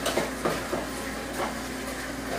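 A few light knocks from things being handled at a kitchen counter, over a steady low hum.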